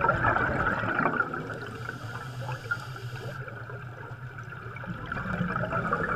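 Underwater bubbling: a continuous gurgling stream of rising air bubbles.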